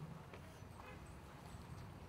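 A few faint, sparse taps on a small hand drum strapped against the thigh, a hula knee drum (pūniu).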